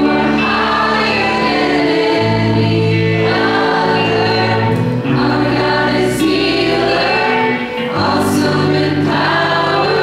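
A live worship band playing a song: singing over electric guitar, keyboard and drums, with held chords that change every second or two.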